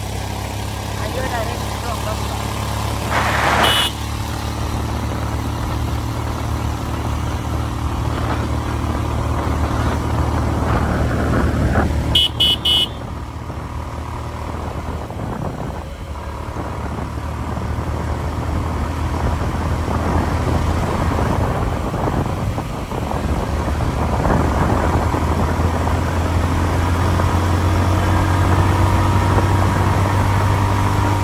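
Motor vehicle engine running steadily with road noise as it travels along a bridge roadway. A vehicle horn gives a short toot about twelve seconds in, and there is a brief burst of noise about three seconds in.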